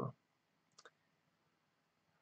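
Near silence with a brief, faint double click just before a second in.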